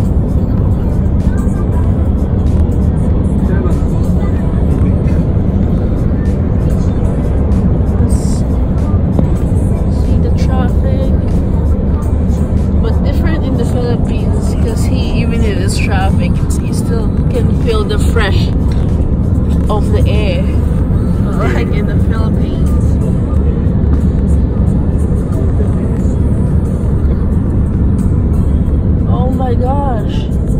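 Steady low rumble of road and engine noise inside a moving car, with music and a singing voice over it.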